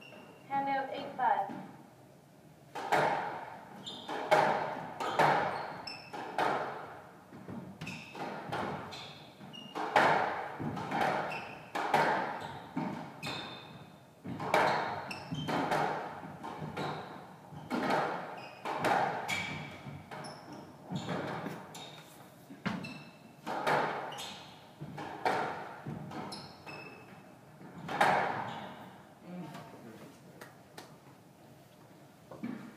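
A squash rally: the ball struck by rackets and smacking off the walls about once a second, each hit echoing in the court, with a few short shoe squeaks on the wooden floor.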